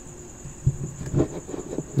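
A steady high-pitched tone runs under low background noise. There is a soft low knock about two-thirds of a second in and faint vocal sounds in the second half.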